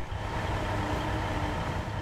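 Engine of a John Deere tracked excavator working in the river, a steady low rumble.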